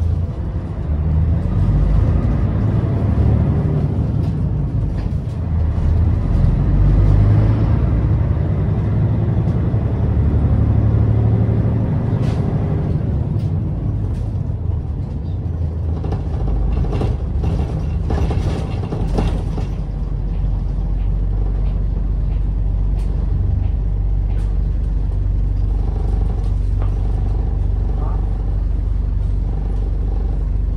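Cabin noise of a city bus on the move: the engine and road noise rumble continuously, swelling over the first dozen seconds, with a short spell of sharper hissing and clicks about sixteen seconds in.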